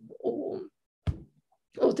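A woman's drawn-out, low hesitation vowel ("o…") for about half a second, then a single short click about a second in. After that the audio cuts to dead silence, as Zoom's noise gating does, until speech resumes near the end.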